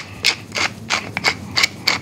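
A hand-twisted pepper mill grinding peppercorns: a quick, even run of short rasping crunches, about five or six a second.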